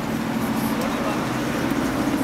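Street traffic with a steady engine drone from a nearby vehicle.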